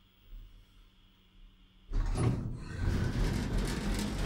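Elevator's automatic sliding doors running, a loud rough sliding noise that starts suddenly about two seconds in and carries on, after a faint steady hum.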